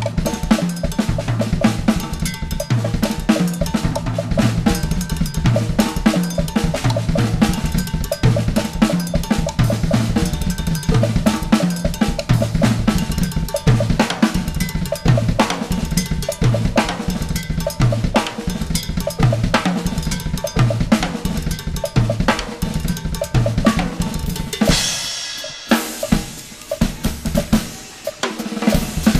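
Solo drum kit playing: fast, dense strokes on snare, toms and bass drum with cymbals, over a repeating low-drum pattern. Near the end a cymbal crash rings out as the drums briefly stop, then quieter playing resumes.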